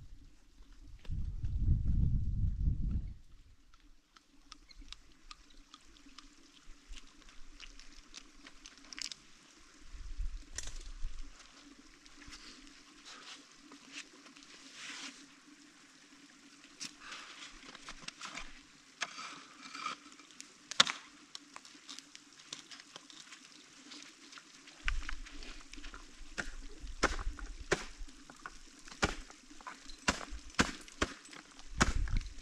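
Ice tool picks and crampon points striking water ice on a frozen waterfall: scattered sharp knocks and ticks at irregular intervals, the loudest single strike about two-thirds of the way in, with ice chips pattering down. A low rumble on the microphone comes about a second in and again near the end.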